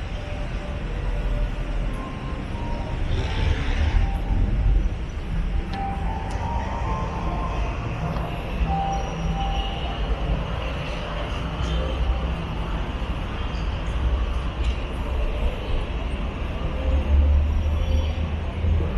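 Street and rail noise beside an elevated train line and a busy road: a steady low rumble with a hiss over it and scattered short tones.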